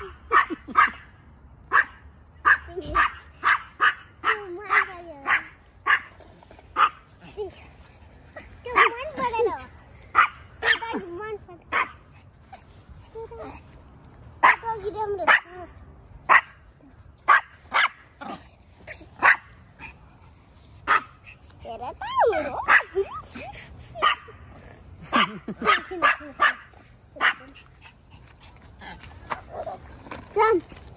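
Small dog barking in short, sharp, high yaps, over and over in quick runs.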